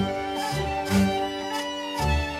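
Swiss folk ensemble playing an Appenzeller waltz: fiddles carry the melody over hammered dulcimer, with double bass notes marking the beat.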